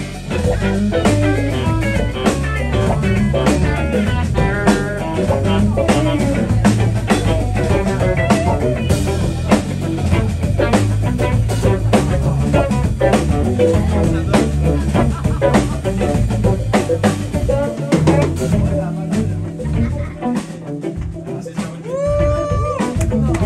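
Live blues band playing: electric guitar leading with single-note lines over drum kit, bass guitar and keyboard. The drums drop back and the low end thins out near the end.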